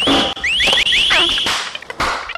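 Alarm-like electronic tone: a quick rising glide into a held high note, then five fast rising whoops in a row, the held note breaking off about one and a half seconds in.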